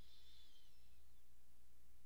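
Quiet room tone with a steady low hum and a faint, thin high tone that slowly falls in pitch during the first second.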